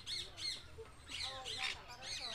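Parrots squawking in an aviary: a run of short, harsh, arching calls repeated a few times a second, with a brief lull about midway and a denser cluster of calls in the second half.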